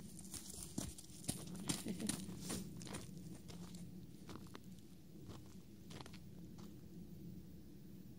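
Horse's hooves stepping on frozen, snow-covered ground as it walks away. A quick run of steps in the first three seconds grows sparser and fainter.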